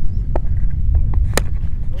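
Steady low wind rumble on the microphone, with a few faint clicks. About one and a half seconds in comes a single sharp crack of a cricket bat hitting the ball.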